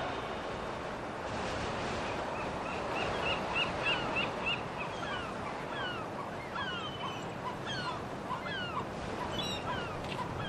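Outdoor ambience: a steady rushing noise with birds calling. A quick run of short chirps comes a few seconds in, then a string of high calls that each slide downward, one every half second or so.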